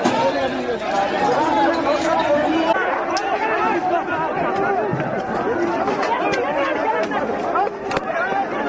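A crowd of many voices shouting over one another, continuous and loud, with a few sharp knocks among them.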